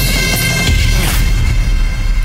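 Background music score: sustained held tones over a low, heavy bass.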